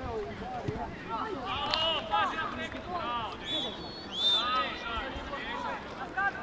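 Youth football players and coaches shouting and calling to each other across the pitch: many short, high shouts, overlapping one after another.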